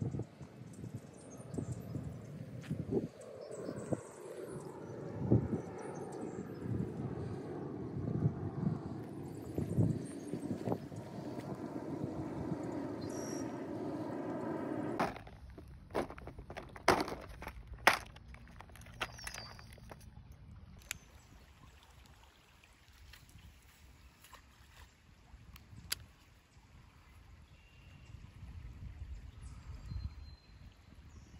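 Outdoor movement and handling noise, uneven and full of small knocks. Then a few sharp clicks come about a second apart around the middle, followed by quieter open-air ambience.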